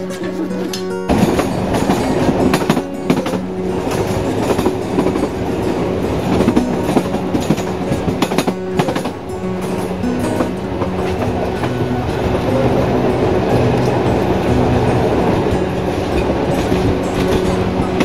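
A historic Sóller Railway train running along the track, heard from on board. From about a second in there is a steady rattle and clickety-clack of the wheels and carriages, with repeated clicks over the rails.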